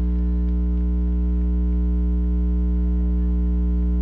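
Steady electrical mains hum with a stack of overtones, unchanging in level, with no other sound on top of it.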